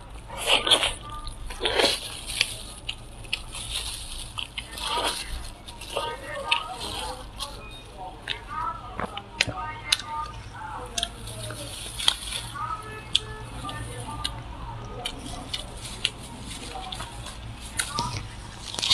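Close-miked eating of a braised pork trotter: wet chewing, sucking and tearing at the soft skin, with many short sharp mouth clicks and smacks scattered throughout.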